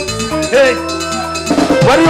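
Live band music: drum kit and keyboard with a cowbell keeping time, and a singer's voice sliding in pitch over the held chords, growing louder near the end.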